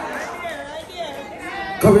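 Only voices: quieter background chatter of a congregation in a large hall, then a man's amplified voice breaking in loudly near the end.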